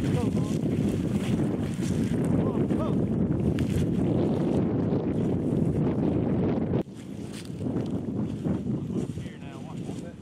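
Wind buffeting the microphone, a loud low rumble, which drops off suddenly about seven seconds in, leaving a quieter open field. A few short whistle-like calls rise and fall over it.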